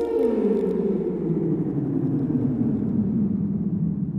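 Eerie background music: a low drone of several tones that slides steadily downward in pitch, steeply in the first second and slowly after.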